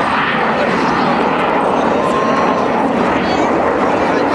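Jet noise from a Kawasaki T-4 of the Blue Impulse display team flying with its smoke on: a steady rush, with voices of the crowd faintly under it.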